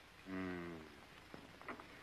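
A low voice-like hum lasting about a second, falling slightly in pitch.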